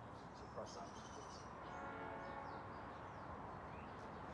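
Faint steady outdoor background with a distant horn sounding one steady chord for about a second and a half around the middle, and a few high bird chirps.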